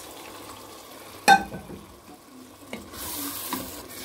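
Fish stock poured into a pot of frying pepper-and-tomato sauce, the sauce sizzling, with a wooden spoon stirring. A single sharp clink comes about a second in, and the hiss grows louder near the end.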